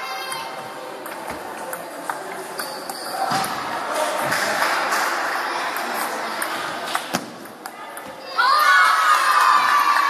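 Table tennis rally: a ball clicking off bats and table at irregular intervals over a murmuring crowd, then about eight seconds in a sudden, loud burst of children shouting and cheering.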